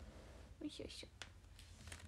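A young woman speaking very softly, almost in a whisper: a brief murmur with hissing consonants about half a second in, followed by a couple of faint clicks, over a low steady hum.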